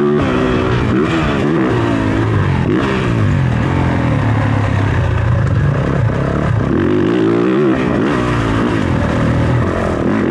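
Motocross dirt bike engine ridden hard, its note climbing and dropping again and again as the throttle is worked through turns and ruts.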